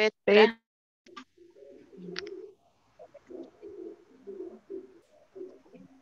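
A bird cooing faintly in a run of short, low notes repeated every fraction of a second.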